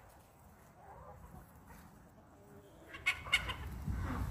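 Backyard hens clucking: a few faint, soft clucks at first, then a run of louder, short clucks about three seconds in, over a low rumble.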